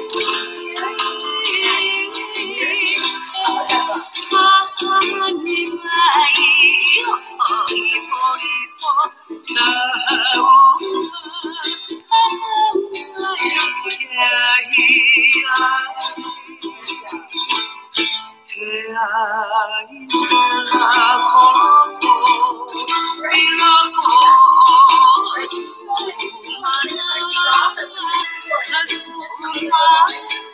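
Recorded hula song with a singing voice, played from a laptop's speakers into the room: it sounds thin, with no bass at all.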